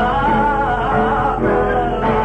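Sardinian canto a chitarra in the 'cantu in re' mode: a man sings long, wavering, ornamented notes to guitar accompaniment. It is an old 1956 recording with a steady low hum beneath.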